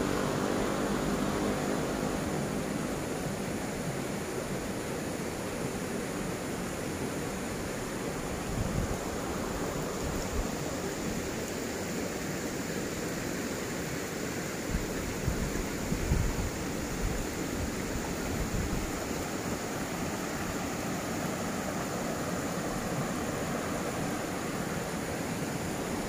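A river rushing steadily, an even wash of water noise, with a few low bumps of wind or handling on the microphone around the middle.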